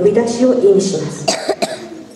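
Speech: a woman's voice narrating into a podium microphone, with two short sharp noises about one and a half seconds in.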